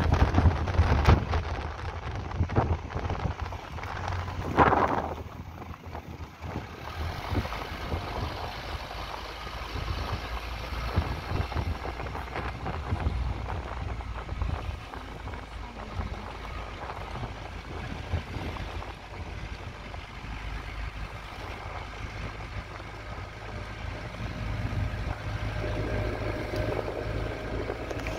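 Wind buffeting the microphone: a low, uneven rumble with stronger gusts and knocks in the first five seconds, then steadier.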